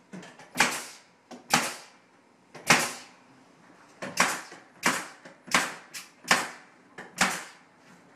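Pneumatic finish nailer firing about ten times in irregular succession, each a sharp shot with a short trailing hiss of air, driving nails into wooden trim panels.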